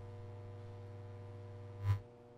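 A faint, steady low electrical hum with a sharp click near the end, after which the hum fades away.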